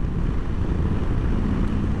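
Moto Guzzi V85TT's air-cooled 853 cc V-twin pulling from low revs in a high gear on an uphill, a steady low rumble heard from the rider's seat, with wind noise over the microphone.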